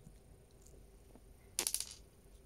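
A quick rattle of small sharp clicks, about half a dozen within a third of a second near the end: a tiny plastic miniature nail polish bottle clattering as it is set down on a plastic tabletop. Otherwise faint room tone.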